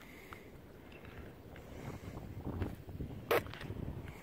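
Low, uneven rumble of wind buffeting an outdoor microphone, stronger in the second half, with one sharp click a little after three seconds in.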